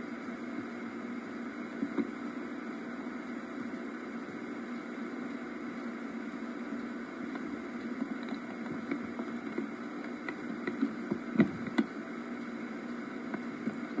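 Steady hiss from an old camcorder tape's soundtrack played back through a television speaker, with a few faint clicks near the end.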